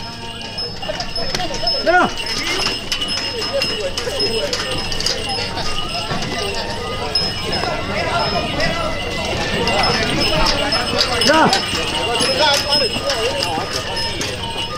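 Voices of the procession calling out in short rising and falling shouts, over a scattered clatter of clicks and knocks as bearers rock a wooden deity palanquin.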